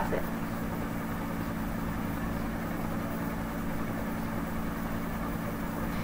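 A steady low hum with an even hiss over it, unchanging and without any separate events: background noise of the recording room.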